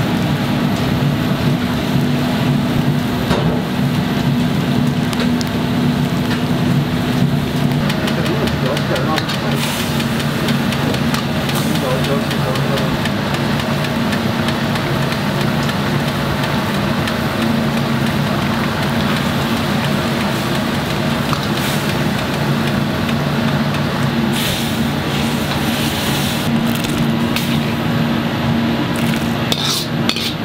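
Steady roar of a commercial gas wok burner and kitchen extractor running, with a constant low hum. A few short clinks and scrapes of a ladle against the wok come later on, most of them near the end.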